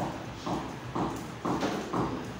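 Regular knocking beats, about two a second, evenly spaced like a steady rhythm.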